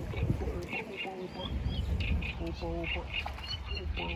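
Birds calling in short, high chirps, often in pairs, over faint low voices.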